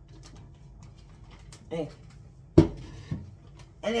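A metal cooking pot set down on a hard surface with one sharp knock, followed by a lighter knock about half a second later, amid faint handling clicks of a plastic zip bag.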